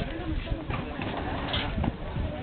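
Crowd of people talking at once, overlapping voices with no single speaker standing out, over a constant low rumble.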